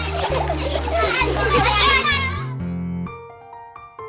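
A crowd of children chattering and shouting over background music with a steady bass line. About two and a half seconds in, the voices and bass fade out, leaving a soft piano melody.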